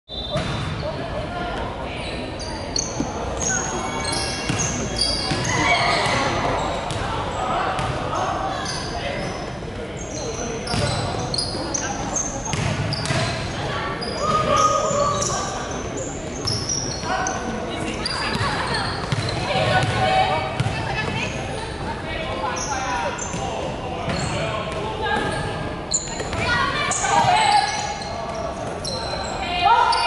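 Sounds of an indoor basketball game: a basketball bouncing on a wooden court, short high sneaker squeaks, and players calling out, all echoing in a large sports hall.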